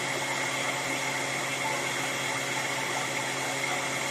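A 12-amp vacuum cleaner running steadily on a solar generator's inverter, drawing about 710 watts: a constant rushing motor noise with a high, thin whine.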